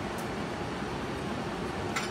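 Steady whir of running punched-card machines and their cooling fans in the IBM 1401 machine room, with a faint click shortly after the start.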